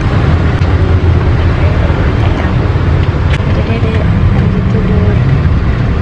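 Steady low rumble of a car on the move, heard from inside the cabin, with faint voices.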